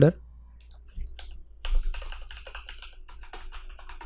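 Typing on a computer keyboard: a few separate clicks about a second in, then a quick run of keystrokes lasting about two seconds.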